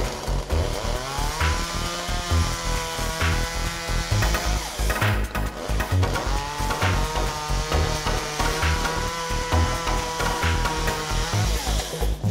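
A chainsaw runs in two long stretches, revving up at the start of each, over background music with a steady beat.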